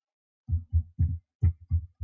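A quick, irregular run of short, low, dull thumps, about three or four a second, starting about half a second in.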